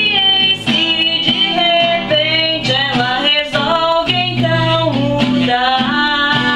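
A woman singing, accompanying herself on a strummed acoustic guitar.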